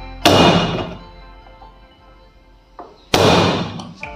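Two heavy whacks of a cleaver on a cutting board, about three seconds apart, each ringing on for most of a second, with a lighter knock just before the second. Background music plays underneath.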